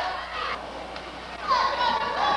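Several spectators' voices, many of them high-pitched, shouting and calling out over one another, with a louder burst of shouting about one and a half seconds in.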